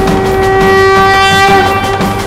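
Background music: one long, steady horn-like note, fading out about a second and a half in.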